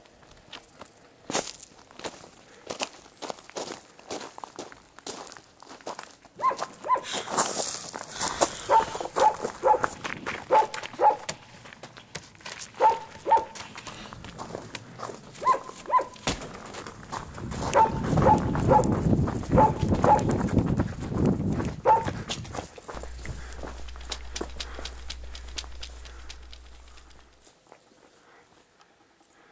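A dog barking in short repeated yaps, often two at a time, from about six seconds in until about twenty-two seconds, over footsteps.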